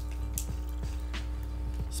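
Scissors cutting packing tape on a cardboard parcel: a few short, separate snips over steady background music.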